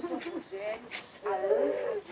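A person's voice in a close crowd, bending and breaking in pitch in short pieces, fading for a moment and returning stronger near the end.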